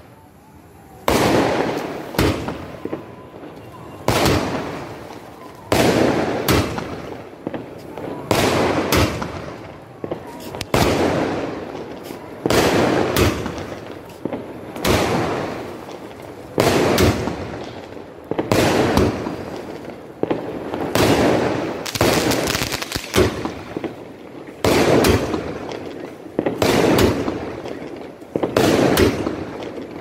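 A 30-shot aerial fireworks cake (Elephant Brand 'Night India' sky shot) firing shot after shot, each a sharp bang with a fading tail, about one every one to two seconds and sometimes in quick pairs.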